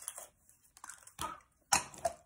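Mouth sounds of a cough drop being put in the mouth and sucked: a few short, wet noises, the loudest near the end.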